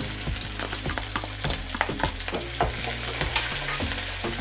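Chopped green onion and green chilli sizzling in hot oil in a metal kadhai, with a steady hiss. A metal spatula scrapes and clicks against the pan at irregular intervals as the pieces are stirred.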